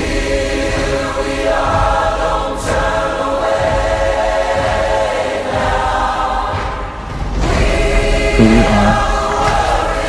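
Epic choral music: a choir holding sustained chords, swelling louder in the last couple of seconds.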